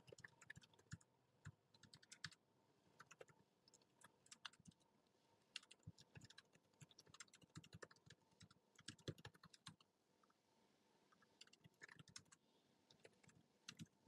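Faint typing on a computer keyboard: quick runs of key clicks broken by short pauses, with a longer pause about ten seconds in.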